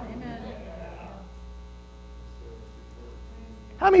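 Pause in speech: a steady low electrical mains hum in the microphone and sound system, with a faint voice in the room fading out about a second in.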